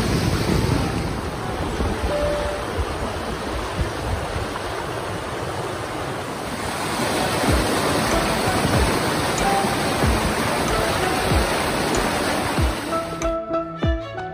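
Rushing water of a rocky mountain stream pouring over boulders, a steady hiss, with soft background music underneath. Near the end the water sound cuts off suddenly and the music carries on alone.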